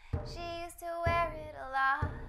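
A woman singing a drawn-out, wordless melodic line, her pitch gliding and her last note held, over a song's backing music with a low beat about once a second.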